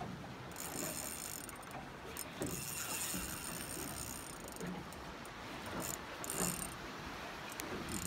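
Fishing reel being wound in short spells under the load of a hooked fish, with the gears whirring each time the handle turns.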